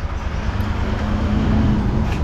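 A steady low rumble with a faint continuous hum and background noise, with no distinct events.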